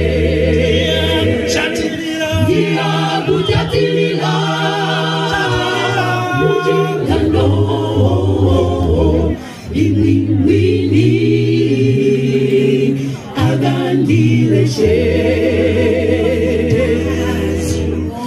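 Mixed choir of men's and women's voices singing a cappella in close harmony, holding long chords with short breaks between phrases about nine and thirteen seconds in.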